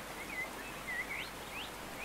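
Nature ambience: small birds chirping in a string of short rising calls over a steady hiss of running water.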